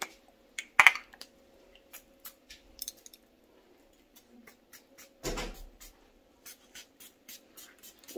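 Handling of a glass My Burberry perfume bottle: a sharp click about a second in, scattered light clicks and taps, and one short spritz of perfume about five seconds in.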